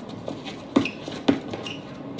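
Basketball dribbled on an outdoor court: two sharp bounces about half a second apart.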